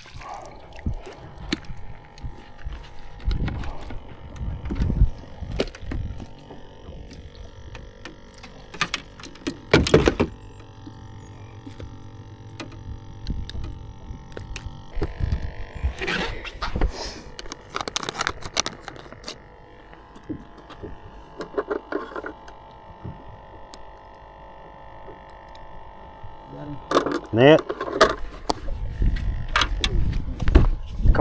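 Knocks and clatter of fishing gear being handled on a bass boat's deck, with one loud knock about ten seconds in, over a faint steady hum.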